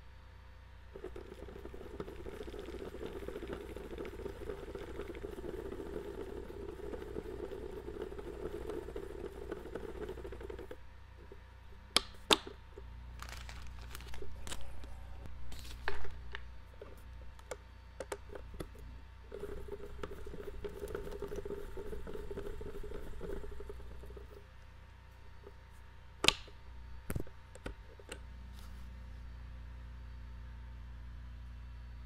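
Norvise rotary fly-tying vise spinning, a steady whir that runs for about ten seconds, stops, then comes back for about five seconds. Between and after the spins come scattered sharp clicks and taps.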